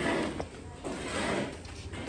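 Indistinct voices of people standing close by, with a short laugh near the end.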